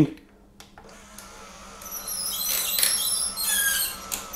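Small battery chain-drive roller-blind motor running, pulling the bead chain over its plastic cog, which is fitted tight enough not to slip. It sets in with a high, wavering squeak that builds over the last two seconds or so.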